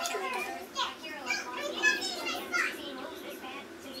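A young child's voice, talking and babbling in short bursts.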